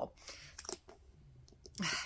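A woman's breathy exhale in a pause, a couple of small sharp clicks, and her voice starting up again near the end.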